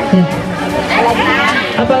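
Voices and chatter from a crowd of schoolgirls, over steady background music.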